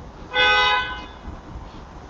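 A single short toot, like a horn, lasting well under a second and steady in pitch.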